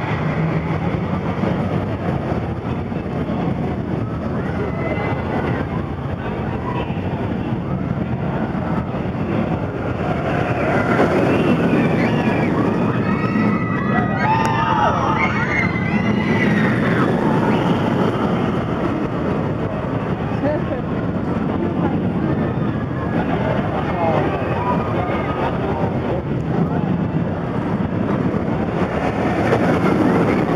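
Wicked Twister's launched inverted coaster train running back and forth along its track and up the twisted spike, a steady rushing noise that swells from about ten seconds in, with riders screaming through the middle as the train passes overhead. Crowd chatter from the queue runs underneath.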